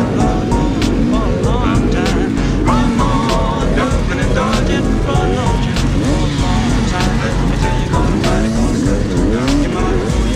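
Two-stroke enduro dirt bikes, the rider's own KTM 250 EXC among them, revving up and down in short throttle blips at low trail speed, mixed with background music.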